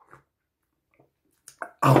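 A man sipping warm tea from a mug: mostly quiet, with a few short faint sip and swallow sounds, then his voice saying "Oh" at the very end.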